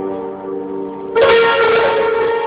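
Instrumental music: held notes ringing on, then a loud new chord struck just over a second in that keeps ringing.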